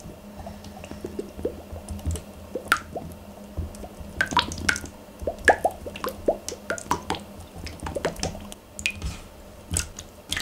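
Clear green Seria 100-yen-shop slime squishing and popping in short sticky clicks as a small plastic cup is pressed into it. The pops come thicker from about four seconds in.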